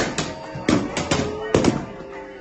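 A handful of sharp, irregular cracks, about eight in two seconds, some in quick pairs, over faint voices.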